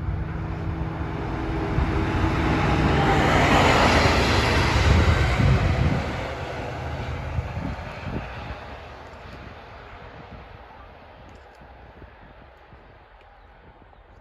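Class 37 and Class 68 diesel locomotives running light together, passing by: the engine noise swells to its loudest about four to five seconds in, then fades steadily as they move away.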